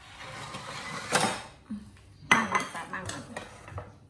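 Metal spatula scraping and clinking in a wok of fried rice, with cookware and dishes clattering; a few sharp clanks, the loudest a little over two seconds in, then lighter clinks.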